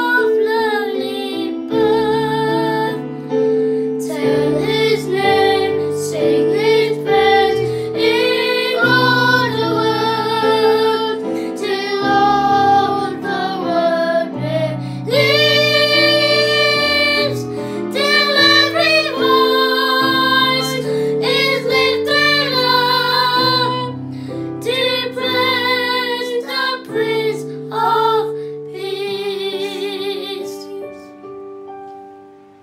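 Three young boys singing a hymn together over an instrumental accompaniment with sustained low notes.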